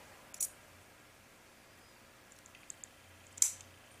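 A few small clicks of steel trigger parts in a Winchester Model 94AE lower tang being handled and pressed together, the loudest about three and a half seconds in.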